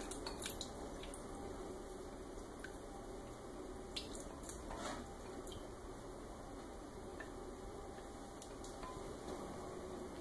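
Faint squishing and dripping of a thick sour-cream-and-egg batter being poured and scraped with a spatula from a glass bowl into a stainless steel mixing bowl, with a few light clicks of utensil on bowl.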